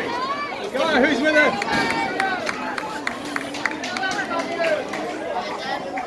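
Speech only: several voices shouting and calling over one another, players and spectators during rugby play.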